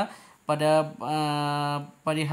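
A man's voice: a short syllable about half a second in, then one long sound held at a steady pitch for nearly a second.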